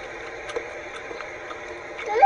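Faint, steady background hiss with a faint click about half a second in.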